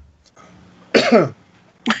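A person gives one short, throat-clearing cough about a second in, followed near the end by the start of a laugh.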